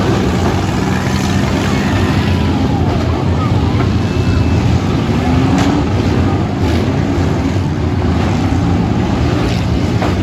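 Many minivan engines running and revving at once as the vans drive and ram each other in a demolition derby, with a few faint knocks of collisions in the middle and near the end.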